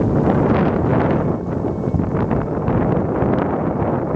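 Ash explosion from a volcanic crater vent: a loud, steady, deep rumble shot through with many small crackles, mixed with wind buffeting the microphone.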